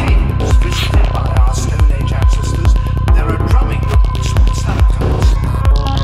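Dark progressive psytrance from a DJ set: a steady kick drum about twice a second, with deep bass between the kicks and a sustained high synth tone over it.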